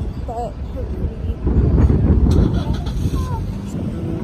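Low rumble of a motor vehicle going by, swelling to its loudest in the middle, with faint voices in the background.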